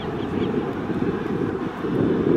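Low, steady rumble of an Airbus A330-900neo's Rolls-Royce Trent 7000 jet engines as the airliner rolls slowly down the runway after landing.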